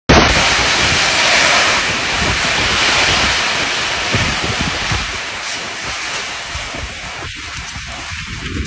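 Torrential rain pouring with strong wind gusting across the microphone in a thunderstorm, a loud, even rushing that eases a little toward the end.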